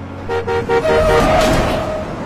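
A car horn honking five short times in quick succession, then a loud tyre screech under hard braking: the sound effects of a road accident.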